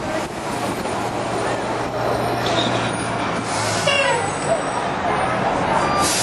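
City street traffic noise with a large vehicle's engine running steadily, and a brief higher squeal about four seconds in.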